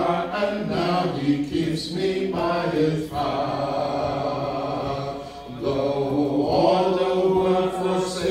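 Voices singing a slow hymn a cappella, without instruments, in long held notes with brief breaks between phrases.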